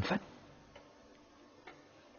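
The end of a spoken word, then a quiet pause with two faint clicks about a second apart.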